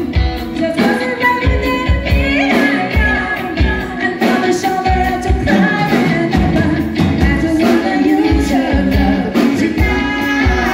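Live band music with a woman singing lead into a microphone, backed by electric guitar, bass guitar and drums keeping a steady beat.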